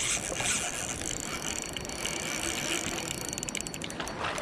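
Spinning reel's drag clicking as a hooked salmon pulls line off it, ending in a fast run of clicks, over the steady rush of river water.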